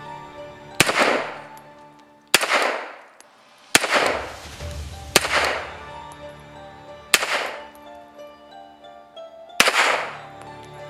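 Beretta 96FS .40 S&W pistol fired six times at an unhurried pace, roughly one shot every one and a half to two seconds, each report followed by a short ringing echo. Background music plays underneath.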